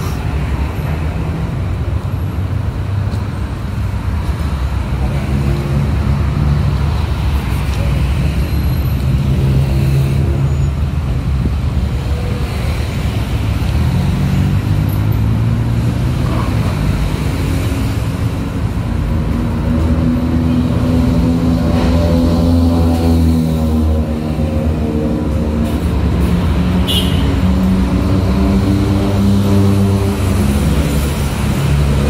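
Busy city road traffic heard from the sidewalk: cars, motorbikes and heavier vehicles running past with a steady roadway hum. A heavier engine drones louder in the second half, its pitch wavering up and down.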